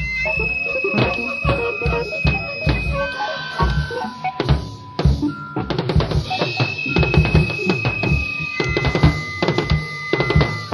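A post-punk rock band playing. The full band comes in sharply at the start, with a busy drum kit to the fore, bass drum and snare, and long held high notes over the top.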